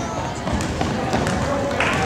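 Indoor basketball-gym sound: indistinct voices of spectators and players, with a basketball bouncing and thuds on the hardwood court.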